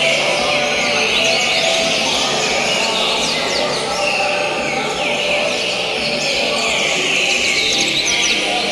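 Several caged coleiro seedeaters singing at once, quick chirping phrases and short falling notes overlapping without a break, over a steady murmur of people.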